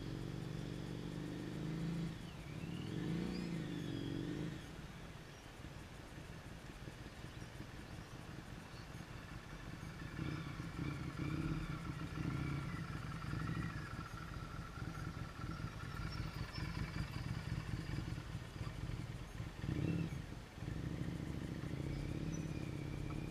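Motorcycle engine running at low speed, its pitch rising and falling about two to four seconds in. It fades for a few seconds, then comes back louder as the bike passes close from about ten seconds on, with a brief louder surge near the end.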